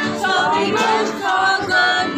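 A small group of carol singers singing a Christmas carol together, unaccompanied.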